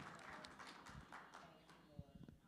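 Near silence: faint room noise with scattered light knocks and rustles that thin out and fade.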